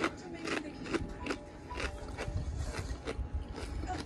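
Doritos tortilla chips being chewed with the mouth close to the microphone: irregular crisp crunches, several a second.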